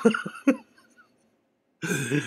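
A man laughing briefly in a few short bursts, breaking off into about a second of silence before a voice starts again near the end.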